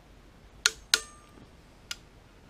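Torque wrench clicking on the LS2 camshaft gear bolts as it reaches its set torque: two sharp metallic clicks about a third of a second apart just past half a second in, then a fainter click near the end.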